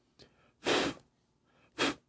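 A person blowing short puffs of air, twice, the first longer than the second, to burst small bubbles in wet acrylic paint.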